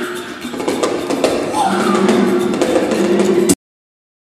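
Glam metal band playing live: drums under held guitar and bass notes. About three and a half seconds in, the sound cuts off abruptly into dead silence.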